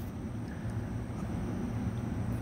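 Industrial greenhouse fans running: a steady low rumble with no clear rhythm.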